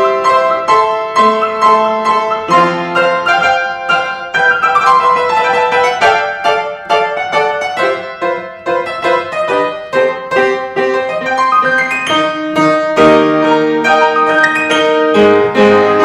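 Baldwin upright piano played solo in a modern classical style: improvised chords and melody, with a quick descending run of notes about four seconds in.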